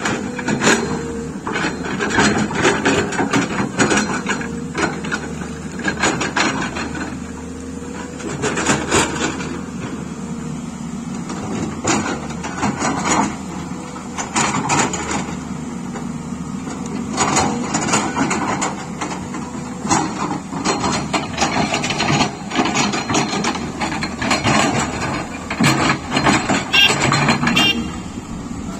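Tata Hitachi 210 Super hydraulic excavator working: a steady diesel engine drone under frequent clatter and knocks as the steel bucket scrapes and drags rocks and mud, the clatter busier in the second half.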